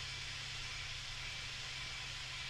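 Steady hiss with a faint low hum: the background noise of the recording, with no other event.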